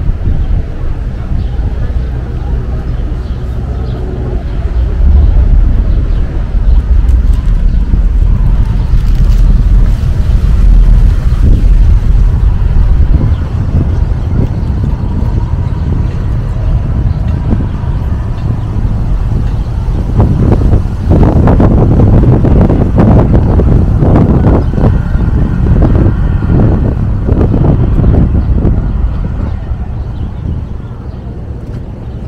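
Outdoor waterfront ambience dominated by wind rumbling on the microphone, heaviest in the first half. People talk nearby from about twenty seconds in.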